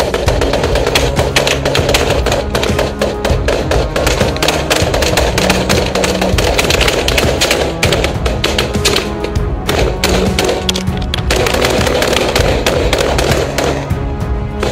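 Music playing over a dense run of rapid sharp cracks, gunfire aimed at the approaching skiff.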